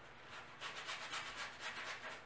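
A wide paintbrush scrubbing acrylic paint onto a canvas in a quick run of short back-and-forth strokes, starting about half a second in.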